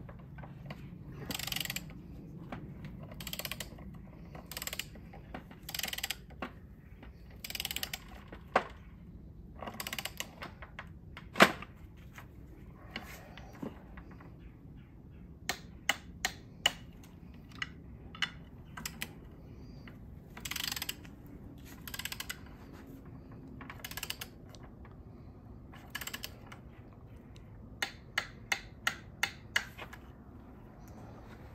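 A torque wrench ratcheting in short strokes as it tightens the oil cooler bolts on a 6.0 Powerstroke oil filter housing to sixteen foot-pounds. There are scattered sharp clicks, one loud click about eleven seconds in, and a quick run of clicks near the end.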